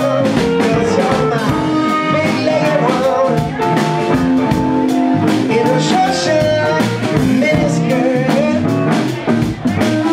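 Blues band playing live: electric guitars, bass guitar and drum kit, the music running steadily and loud.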